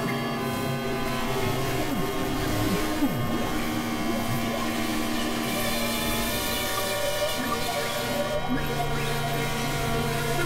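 Experimental synthesizer drone music: many layered steady tones held together, with a few quick pitch glides about two to three seconds in and a new low tone entering near the end.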